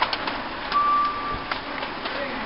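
A group of road bicycles riding past on a wet road, with scattered sharp clicks and a short, steady high squeal lasting about half a second, a little under a second in.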